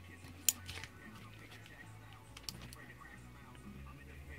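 A sharp click about half a second in and a softer one about two and a half seconds in as an encoder cable connector is plugged into the setting-circle board, over a radio playing music faintly.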